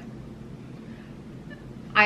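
A baby fussing faintly in the background over quiet room tone.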